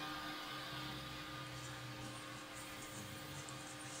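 Faint room tone: a steady low hum and hiss with no distinct sound events.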